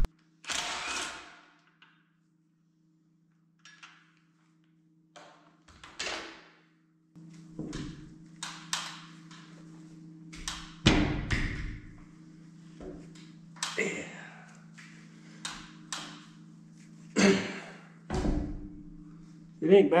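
Metal knocks and clunks as the steel pin is worked out of the rod end of an excavator's stick cylinder, with heavier thuds about halfway through and near the end. A steady low hum comes in about seven seconds in.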